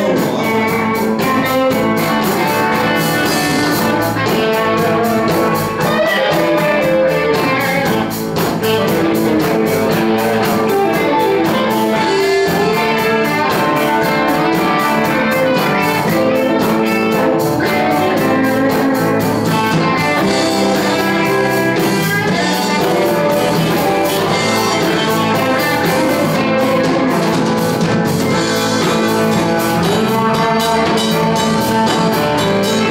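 Live blues band playing: electric guitars over a drum kit, continuous with no singing.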